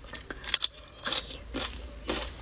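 Crisp crunching bites and chewing of a raw green mango slice, about three sharp crunches roughly half a second apart.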